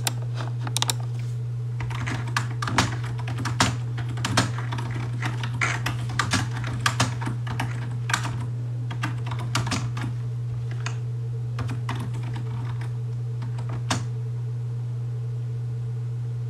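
Irregular key clicks of someone typing, in quick runs for the first several seconds and then only a few scattered taps, over a steady low hum.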